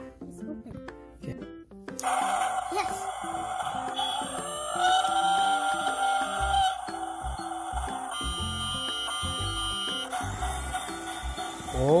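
Battery-powered toy steam train set starting up about two seconds in: a steady hiss and whir with a sustained whistle-like tone that bends upward, heard over background music of plucked notes.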